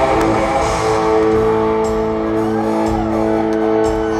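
Live country band on stage holding one sustained chord, several notes ringing steadily together with guitar in it.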